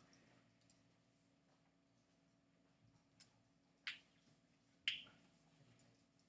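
Near silence: room tone with a faint steady hum, broken by a few short clicks in the second half, the loudest two about four and five seconds in.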